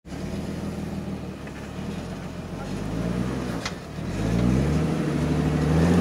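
Jeep rock crawler's engine running at low revs, then revving up and climbing in pitch from about four seconds in as it pulls up a steep sandstone slope. A brief sharp click comes just before the revs rise.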